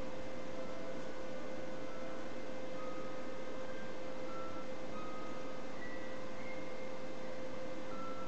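Clarinet, violin and harp trio in a very quiet passage: one soft, steady note held throughout, with brief faint higher notes dotted over it, all over a steady hiss.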